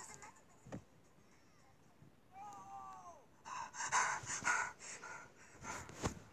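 A man cries out a drawn-out, falling "No!", then pants heavily in loud gasping breaths, about two a second, like someone jolted awake from a nightmare.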